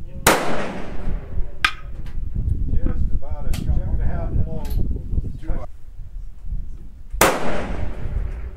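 Two loud rifle shots about seven seconds apart, one near the start and one near the end, each followed by a long rolling echo, with fainter sharp cracks between them.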